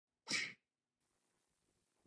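A single short, sharp breathy burst from a person's voice, sneeze-like, lasting about a third of a second early in the clip. After it there is only faint room hiss.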